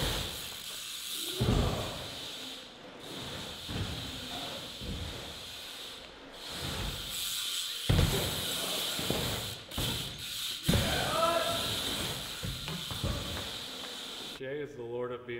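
A BMX bike riding a skatepark bowl: the tyres hiss steadily on the ramp surface, with heavy thumps as the bike lands and pumps through the transitions, about a second and a half in, near eight seconds and again near eleven seconds.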